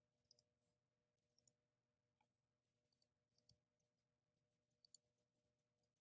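Near silence broken by faint, irregular light clicks of a computer mouse.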